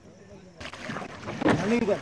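River-boat ambience: a steady rush of wind on the microphone and water noise starts abruptly a little over half a second in. Voices talk over it.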